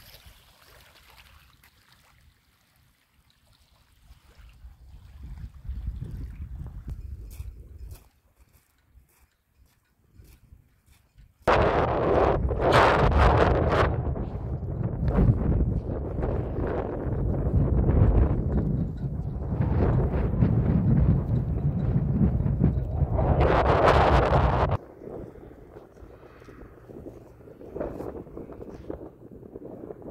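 Wind buffeting the microphone: a loud rumbling rush that starts abruptly about eleven seconds in and cuts off near twenty-five seconds, with fainter gusts before and after.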